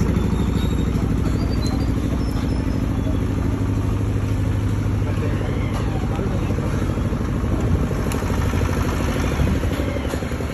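A Bajaj-M 7.5 kVA soundproof diesel generator set running steadily inside its enclosure: a low, even engine hum with a fast, regular pulse from the firing strokes.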